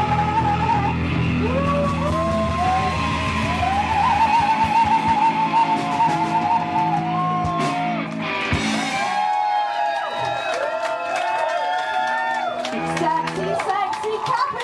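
Live punk rock band playing electric guitars, bass and drums, with a woman's voice on long wavering notes. The heavy low end drops out about four seconds in, leaving held high notes and cymbal hits towards the end.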